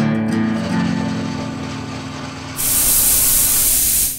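A strummed guitar chord of a short intro jingle rings out and fades. About two and a half seconds in, a loud hiss of released steam cuts in suddenly and holds for over a second before tailing off.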